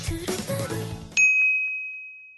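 The last notes of a short intro jingle, then about a second in a single bright bell-like "ding" sound effect that rings on and fades away.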